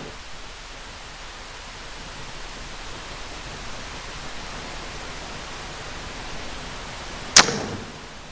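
Steady hiss of room noise, broken near the end by a single sharp strike that rings briefly.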